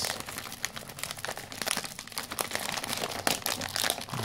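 A shiny foil-lined plastic cotton candy bag (Charms Fluffy Stuff) crinkling and crackling in the hands as it is pulled open, with many quick, irregular crackles.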